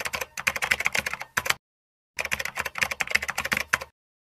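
Keyboard typing sound effect: two runs of rapid key clicks, the first ending about a second and a half in and the second starting about half a second later, timed to text typing itself onto the screen.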